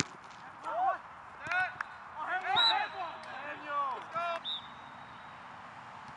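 Men's voices shouting and calling across an outdoor soccer pitch, several short bursts of shouts over the first four and a half seconds. There is a single sharp knock right at the start.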